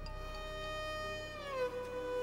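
Dramatic background score: one long held note that slides down in pitch about one and a half seconds in, then holds at the lower pitch.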